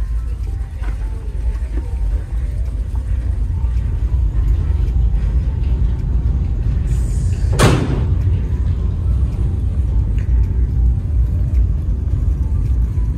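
Wind buffeting the microphone on a ferry's open deck, a loud fluctuating low rumble that rises once outside. A sudden loud rushing gust comes about seven and a half seconds in.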